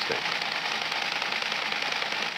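Teletype terminal chattering steadily: a fast, even run of mechanical clicks from the typing and printing mechanism.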